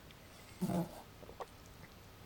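A man's short exclamation, "Oh," followed by a few faint clicks.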